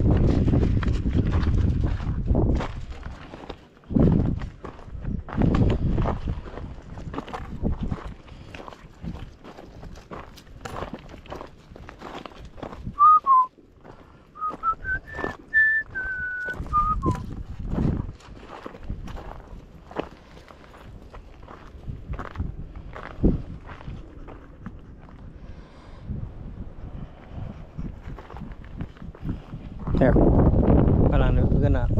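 Footsteps crunching on a gravel and rock trail, with wind rumbling on the microphone at the start. About halfway through, a short whistled phrase rises and then falls over a few seconds.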